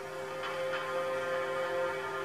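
Background music: soft held notes with a few light ticks.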